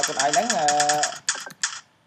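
Computer keyboard keys clicking in quick, uneven succession as someone types, with a voice talking over the first half.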